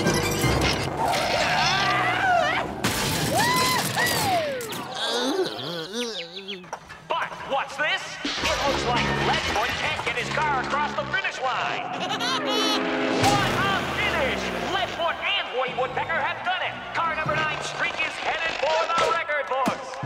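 Cartoon soundtrack: fast comic music mixed with sound effects and wordless character voices, full of sliding whistle-like pitch glides.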